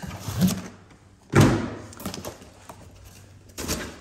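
Cardboard boxes and packages being shifted and set down on a wooden workbench: a few knocks and scuffs, the loudest a thud about a second and a half in.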